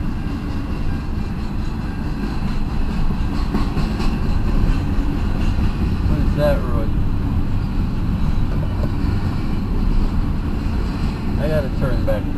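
Steady low rumble of a passing freight train, heard from inside a car. Two brief higher-pitched sounds come about six and eleven seconds in.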